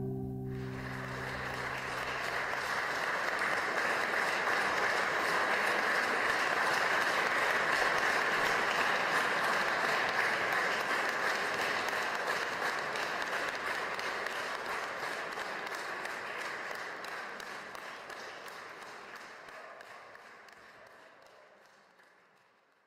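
An audience applauding at the end of a song, while the song's last held note dies away in the first couple of seconds. The applause swells, then slowly fades out.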